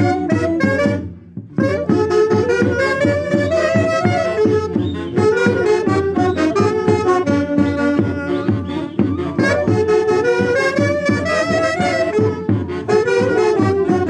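Saxophones playing a Peruvian santiago melody in harmony over a steady bass beat, with a brief break about a second in.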